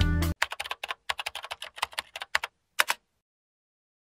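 Music cuts off abruptly just after the start, then a rapid, uneven run of keyboard-typing clicks, an edited typing sound effect, goes on for about two and a half seconds and stops.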